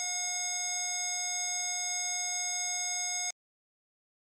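Hospital patient monitor's flatline tone: one steady electronic tone, the sign of no heartbeat. It cuts off suddenly about three seconds in.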